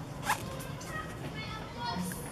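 An inflated rubber balloon squeaking under a macaque's fingers as it rubs and presses the skin: one sharp rising squeak about a quarter second in, then a quick run of short squeaks near the end.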